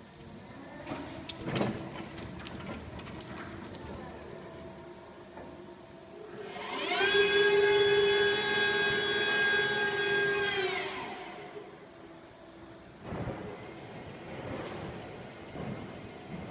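Linde K13 electric warehouse truck: its hydraulic pump motor whines up to a steady pitch about seven seconds in, holds for about four seconds as the operator platform lifts up the mast, then winds down. Before and after it, a quieter hum from the truck with a few knocks.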